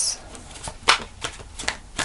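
Tarot cards being shuffled and handled in the hands: a few light card snaps and taps, the sharpest about a second in.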